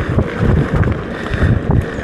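Wind buffeting the microphone of a mountain bike's handlebar camera while riding a dirt trail, heard as an uneven low rumble, with tyre noise and small rattles from the bike.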